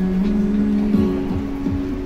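Instrumental passage of an amplified pop song: a held low note over a regular beat, with no lyrics sung.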